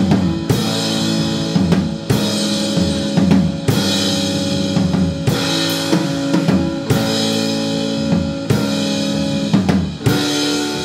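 Live rock band playing an instrumental passage: electric guitar and bass chords held over a drum kit, with kick and snare hits about twice a second.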